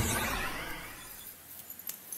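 A sound effect added in editing: a sudden crash-like burst with a falling high whistle at its start, dying away over about a second and a half.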